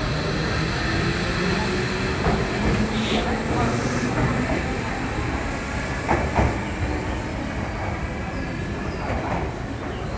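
Tobu Ryomo limited express electric train pulling out of the platform, its cars running past with wheels clacking over rail joints as the last car goes by. The rumble then eases as the train draws away.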